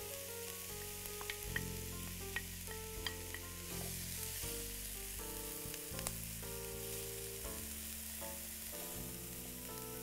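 Diced red bell pepper, onion and garlic sizzling in olive oil in a frying pan while a wooden spoon stirs them, with a few light clicks of the spoon against the pan.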